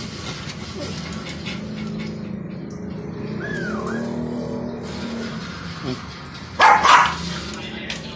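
A small dog barks twice in quick succession, about two-thirds of the way in, over a steady background of music.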